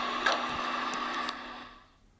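Steady hum of a reverse-osmosis water station's machinery with a few short clicks from the phone being handled, fading out near the end as the recording stops.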